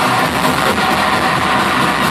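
Live progressive-metal band playing loud through the venue PA: electric guitars, bass and drums in a dense, steady wall of sound, heard from within the crowd.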